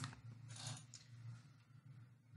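Near silence: faint room tone with a short click right at the start and a couple of faint soft noises.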